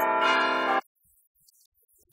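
Bells ringing together, several pitches held in a chord, cut off suddenly less than a second in, then near silence.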